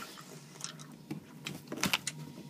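Quiet room with a few faint short clicks and rustles from movement, the loudest just before the end.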